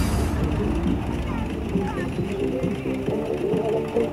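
Several people's voices talking and calling over each other, with music in the background.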